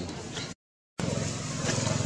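A steady low drone with a noisy wash over it, broken by about half a second of dead silence just after the start, an edit cut.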